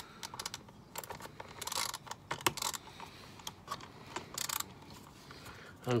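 Crosshead screwdriver working tight screws out of the top of a plastic air filter housing: irregular small clicks with a few short scraping rasps.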